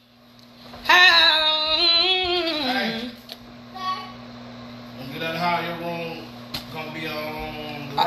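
A voice singing two long, wavering phrases, the first loud about a second in and the second softer about five seconds in, over a steady low hum.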